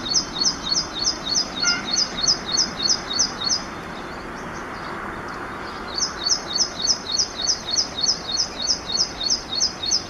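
Ashy prinia singing: a rapid run of repeated high notes, about four a second, that stops about three and a half seconds in, then a second run starting about six seconds in.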